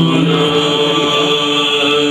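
Byzantine Orthodox liturgical chant: voices singing long held notes over a steady drone, the melody moving slowly above it.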